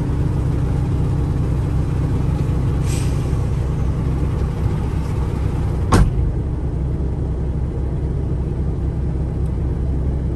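A semi truck's diesel engine idling steadily, with a short hiss about three seconds in and a single sharp knock about six seconds in.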